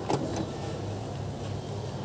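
A Mahindra Bolero pickup's engine idling, a steady low hum, with a short knock just after the start.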